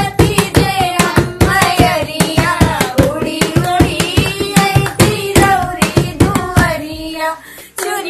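A group of women singing a Bhojpuri pachra, a Navratri devotional folk song to the goddess, keeping time with steady hand claps. The clapping stops briefly near the end while the voices drop.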